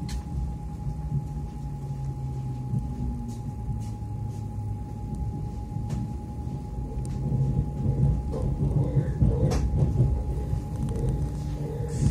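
Cabin sound of an ES2G Lastochka electric train on the Moscow Central Circle running between stations: a steady low rumble with a low hum from the running gear and traction equipment, a constant thin high tone, and a few faint clicks. The rumble grows louder in the second half.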